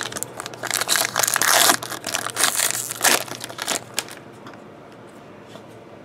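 A 2013 Topps Tribute baseball card pack wrapper being torn open and crinkled by hand, a dense run of crackly rustling that stops about four seconds in.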